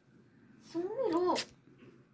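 A girl's voice saying a drawn-out "So", high-pitched, rising and then falling, for under a second in the middle, ending in a short hiss.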